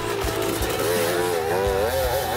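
KTM 200 XC-W two-stroke dirt bike engine revving up and backing off over and over as the bike passes through a corner, the pitch rising and falling several times.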